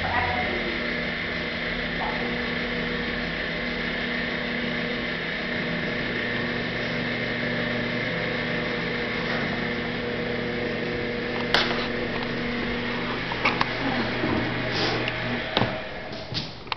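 A machine motor hums steadily with a few held tones, then cuts out about thirteen seconds in. A single sharp click comes shortly before it stops, and a few knocks follow near the end.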